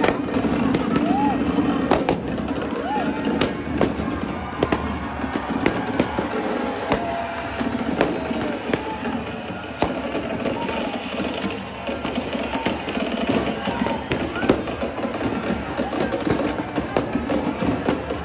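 Fireworks crackling in many sharp, irregular pops, over crowd chatter and music.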